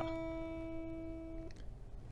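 Acoustic guitar holding a single E note that rings steadily, then is damped and stops short about one and a half seconds in.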